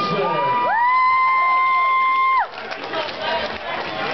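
Fight crowd cheering as the winner's hand is raised, with one spectator close by letting out a single long, high, steady shout that rises in, holds for about a second and a half and cuts off suddenly; the cheering carries on more quietly afterwards.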